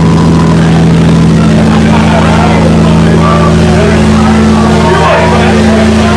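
Loud, steady amplifier drone from the band's rig: one low note held and ringing on through distorted amps between songs. Voices are mixed in, clearest near the end.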